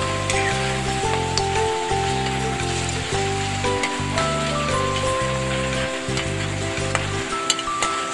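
Background music with a stepping bass line over a steady sizzle of goat meat frying in a wok, with a sharp click or two of the metal ladle against the pan near the end.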